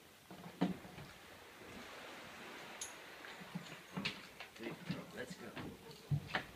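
A Great Dane's paws and claws knocking and scraping on a small boat as she climbs onto its front deck, with a sharp knock about half a second in and a run of short knocks in the second half.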